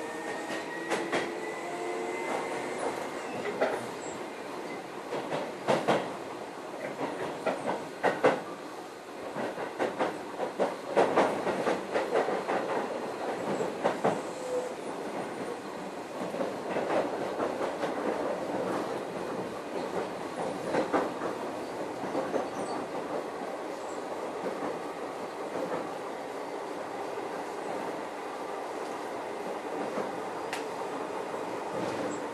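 Keio 7000 series chopper-controlled electric train heard from inside the car. For the first few seconds the chopper's whine climbs in pitch as the train accelerates, then fades. After that come steady rolling noise and irregular clicks of the wheels over rail joints, busiest in the middle.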